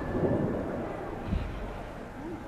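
Low rumbling thuds of gymnastics apparatus, with one sharper thump about one and a half seconds in.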